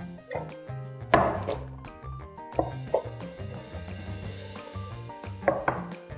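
Seasoned broccoli and vegetables tossed by shaking them in a white casserole dish: a handful of short thuds and rattles as the pieces land, the loudest about a second in. Background music plays throughout.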